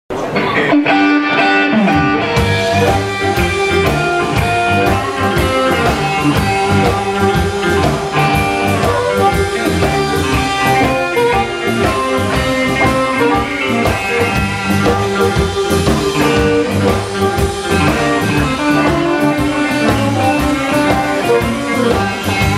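Live blues band playing: electric guitars over a drum kit, with a harmonica played into the vocal microphone.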